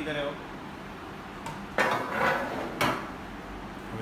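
Metal collection tray, with loose cut jewellery pieces in it, slid back into the base of a die-cutting press: a rattling clatter of about half a second just before the midpoint, then a sharp knock about a second later as it seats.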